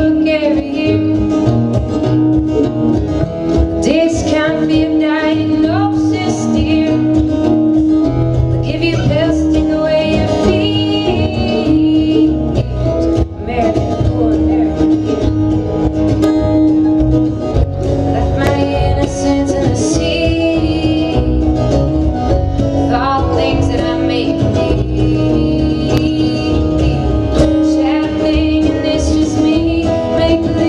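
Live acoustic folk-rock band playing a song: a woman sings lead over strummed acoustic guitar, mandolin, upright bass and drums, at a steady tempo throughout.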